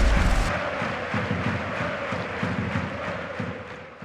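Football crowd chanting, with a deep hit at the very start, fading out steadily toward the end.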